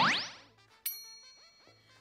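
Edited-in cartoon sound effects: a quick rising glide in pitch that fades out over about half a second, then a bright bell-like ding a little under a second in that rings on and dies away. The ding is a notification cue, as an incoming item from a soulmate pops up.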